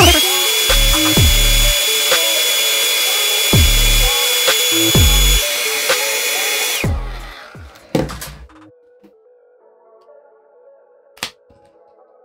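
Hair dryer switched on, its motor whine rising quickly to a steady high pitch over a loud rush of air, with gusts buffeting the microphone; it runs for about seven seconds, warming the tray adhesive, then is switched off and winds down. A few faint clicks of handling follow.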